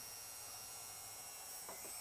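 Proxxon IBS/E rotary drill/grinder's 100 W permanent-magnet DC motor running free in the hand, a faint, steady high whine over a low hum; the motor is well balanced.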